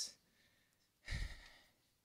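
A person's breathy sigh, lasting about half a second, about a second in.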